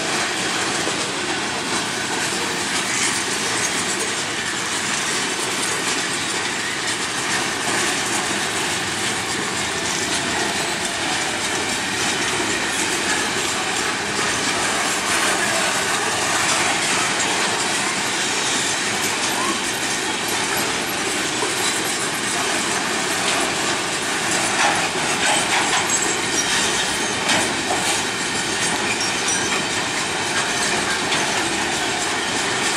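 Container flat wagons of a long freight train rolling steadily past at close range: steel wheels running on the rails with continuous rattle and clatter.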